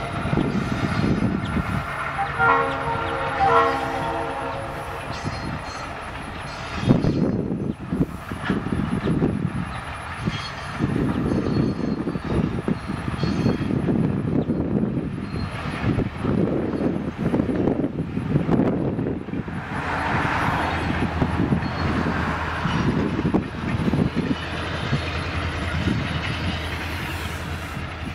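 Freight train cars rolling slowly past, their wheels rumbling and clattering over the rails. The locomotive's horn is ending right at the start and sounds another blast of about a second and a half about two and a half seconds in.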